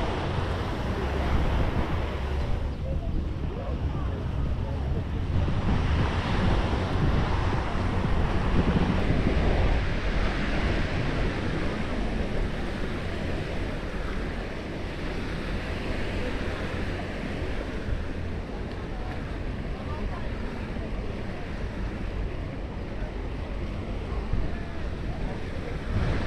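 Beach ambience: gentle surf washing on the shore and a steady wind buffeting the microphone, with the chatter of a crowded beach beneath.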